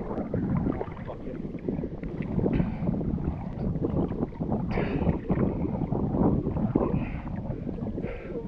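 Choppy seawater sloshing and slapping irregularly against a camera held at the water surface, with wind buffeting the microphone.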